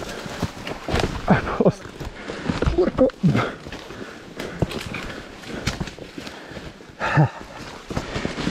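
Dead branches and twigs being pulled and snapped while a forest trail is cleared by hand: repeated sharp cracks and rustling through dry leaves, with footsteps. Short voice sounds of effort can be heard about a second in, around the middle, and near the end.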